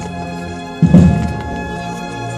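Cornet and drum band playing a slow processional march: the cornets hold a sustained chord while a bass drum strikes once, about a second in.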